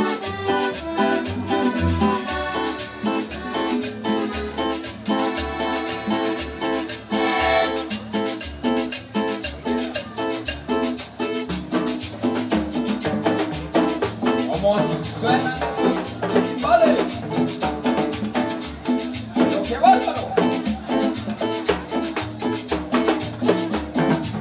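A chanchona band playing live, with upright bass, violin, accordion, electric guitar and congas over a steady beat. A voice comes in over the band in the second half.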